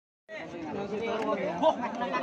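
Several people talking over one another in unclear chatter, starting about a third of a second in.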